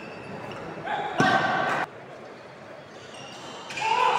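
Badminton doubles rally: racket strikes on the shuttlecock and shoe squeaks on the wooden court floor. The loudest moment is a burst of sound from about a second in that cuts off suddenly.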